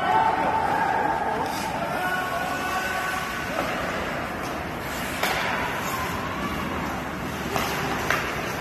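Ice hockey rink during play: spectators' voices and chatter from the stands over a steady hall noise, with a few sharp knocks of sticks and puck.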